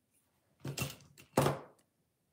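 Pliers and wire being handled: two short knocks, the second louder, about half a second and a second and a half in.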